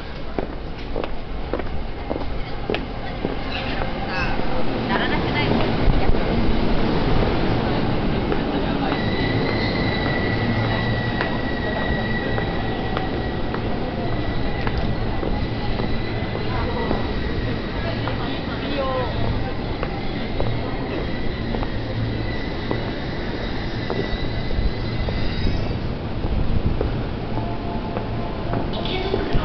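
Train running at a busy station platform over a murmur of waiting passengers. A steady high-pitched whine sets in about nine seconds in and stops a few seconds before the end.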